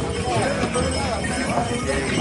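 Pony hooves clip-clopping on a path, among the voices of a crowd of people walking.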